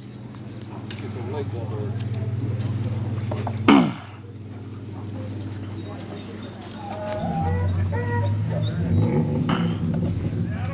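Beagle giving a single short bark about four seconds in, over a steady low hum and faint voices in the background.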